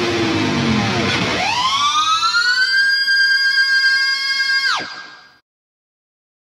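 High-gain electric guitar (Dean From Hell through a '93 Peavey 5150 Block Letter) ending a metal riff. A note glides upward in pitch and is held as a high, steady squeal for a few seconds. It then drops away sharply and dies out about five seconds in.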